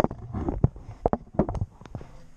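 Irregular short clicks and knocks, about a dozen in two seconds: handling noise as the camera is carried and moved about.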